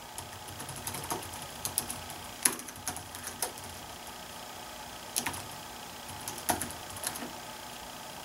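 Typing on a Dell laptop keyboard: key clicks in short irregular runs, with a pause of about a second and a half midway.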